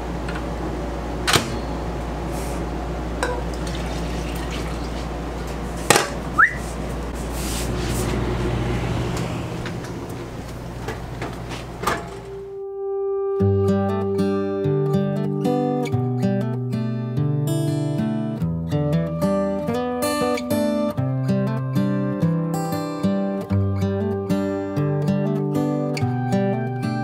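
Kitchen sounds over a steady low hum: a few sharp clinks and knocks of cups and dishes, and a brief rising squeak about six seconds in. About halfway through these cut off and acoustic guitar music takes over.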